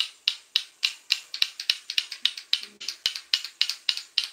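Lato-lato clacker toy: two hard plastic balls on a string knocking together in a steady rhythm, about four sharp clacks a second.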